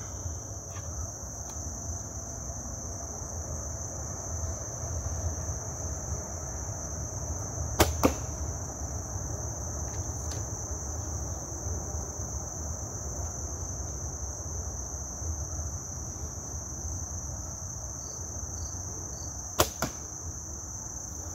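Compound bow shots in a quiet yard: twice, about eight seconds in and again near the end, a sharp crack of the bow's release followed a split second later by the arrow striking the target. Crickets chirr steadily throughout.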